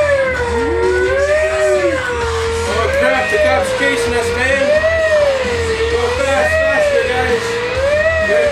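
A police-style wail siren, its pitch rising and falling slowly, about once every two seconds.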